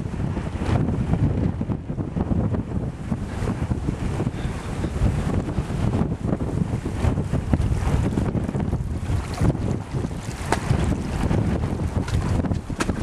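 Wind buffeting the microphone: a loud, continuous low rumble broken by frequent short knocks.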